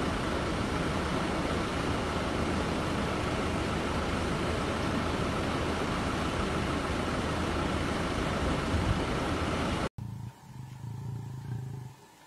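Loud, steady rushing outdoor noise with no distinct events. It cuts off abruptly about ten seconds in, giving way to a much quieter low hum.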